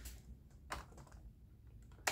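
A single faint click of a series test lamp's switch being flipped on, about two-thirds of a second in, over faint room tone.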